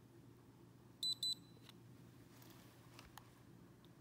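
Handheld light spectrometer giving two short, high beeps about a second in as its measurement completes. A faint click follows near the end.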